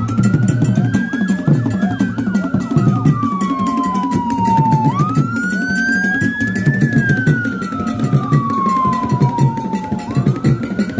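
Siren wail that rises and then falls slowly, about every five seconds, over background music with a low, steady beat.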